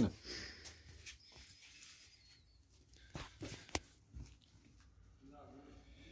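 Quiet hand handling on a workbench: a few light clicks and knocks of tools and objects being picked up and set down, the sharpest about three seconds in.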